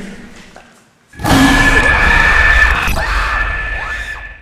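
A horror film's jump scare: after a brief near-quiet, a sudden loud, harsh shriek with a steady high tone through it lasts about three seconds. It comes as the ghost girl turns her distorting face to the camera and the camera jerks away.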